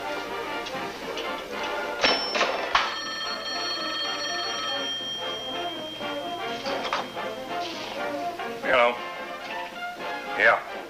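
Wall telephone bell ringing, one steady ring of about four seconds, over background music.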